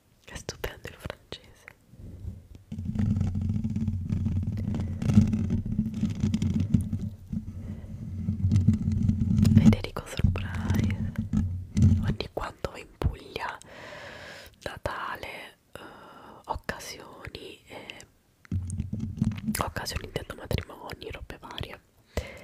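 ASMR mic-scratching and handling on a condenser microphone's metal mesh grille: hands cupping and rubbing over the grille make a loud, muffled low rumble for most of the first half and again briefly near the end. Between these stretches, fingernails tap and scratch the grille in sharp clicks.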